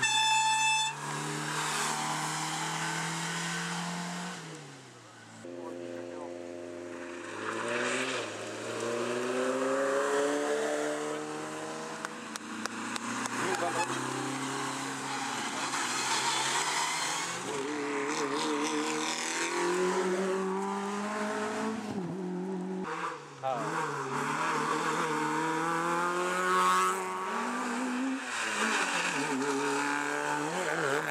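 Several rally cars driven flat out in succession, their engines revving hard and repeatedly climbing and dropping in pitch through gear changes. There is a short shrill squeal in the first second.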